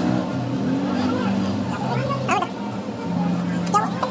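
Indistinct voices over a low, steady hum.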